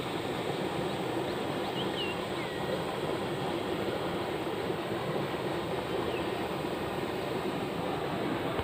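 Steady rushing outdoor noise over a flooded rice paddy, with a few faint, short, high chirps about two seconds in and again near six seconds.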